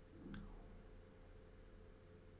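Near silence: room tone with a faint steady hum and one faint click about a third of a second in.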